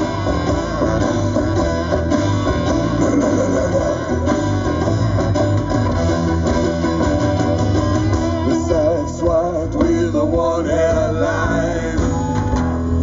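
Live band playing, with banjo and acoustic and electric guitars over drums; the music is loud and dense, with no sung words.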